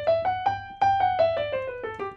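A major scale played on a digital piano, one note at a time at about five notes a second. It climbs to its top note about a second in, then comes back down.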